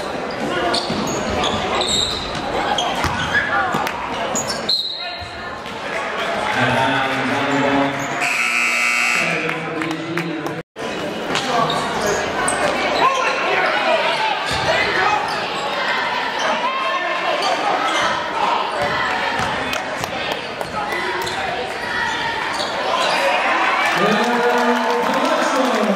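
Sounds of a basketball game in a gym: crowd chatter, a ball bouncing on the hardwood floor and players' footfalls. A buzzer sounds for about a second and a half about eight seconds in, and the sound cuts out for an instant shortly after.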